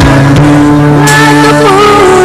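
Loud live band music: a woman singing, her voice wavering, over held keyboard chords, with a few sharp drum or cymbal hits.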